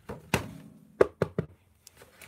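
Plastic VHS-style disc case and its packaging being handled, giving about five knocks: one with a short ring about a third of a second in, then the loudest about a second in followed quickly by two more.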